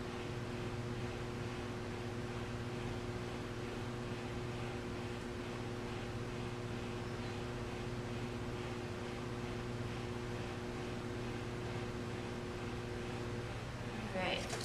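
Pottery wheel motor running with a steady hum over a soft hiss.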